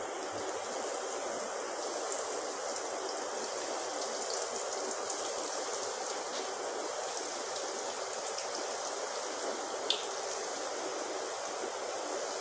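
Breadcrumb-coated lauki koftas deep-frying in hot oil in a pan: a steady, even sizzle, with a brief click about ten seconds in.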